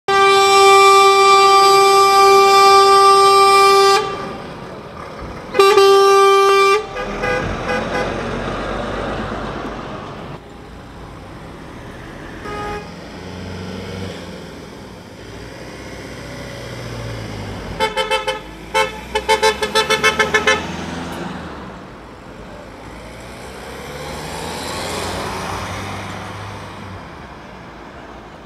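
Vehicle horns of a departing convoy. It opens with a long truck horn blast of about four seconds and a shorter blast a second and a half later, then scattered short toots, and a rapid string of short honks about eighteen seconds in, with vehicles driving past between them.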